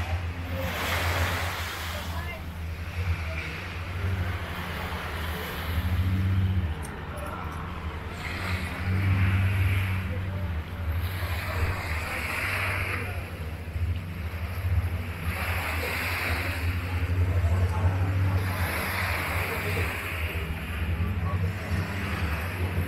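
A steady low motor drone runs throughout, with a wash of waves or surf swelling every few seconds.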